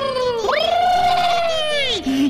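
Cartoon goat bleating: the end of one long bleat, then a second long, wavering bleat that rises and falls away.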